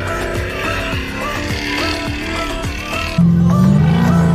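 Background music, and about three seconds in the engine of an off-road trials truck cuts in suddenly over it, running hard and louder than the music.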